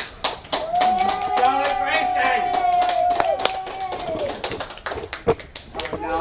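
A small group of people clapping, with a voice giving one long drawn-out whoop that is held for about three seconds and then falls away.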